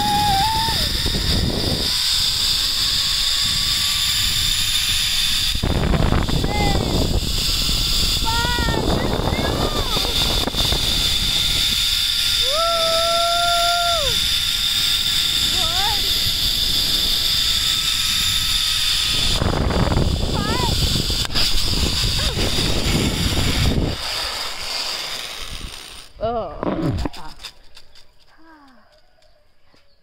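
Zip line trolley running along the steel cable: a steady high whine from the pulleys under loud rushing wind on the microphone, dying away about 24 seconds in as the rider slows and stops. A rider's excited whoops, one held for about two seconds, come through the rush.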